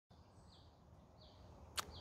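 Faint bird calls: a short falling chirp repeated three times, over a low background rumble. A single sharp click comes just before the end.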